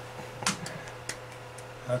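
A few short light clicks or taps, the first and loudest about half a second in, over a steady low room hum.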